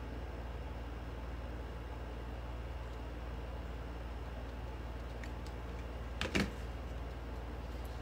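Steady low room hum, and about six seconds in a short knock as a hot glue gun is set down on the table, with a faint tick just before it.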